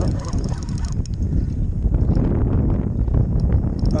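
Wind rumbling on the microphone while a spinning reel is cranked to bring in a hooked fish, with a thin hiss from the reel during the first second and light clicks.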